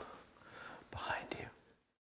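A faint whisper about a second in, after a low drone dies away, then total silence.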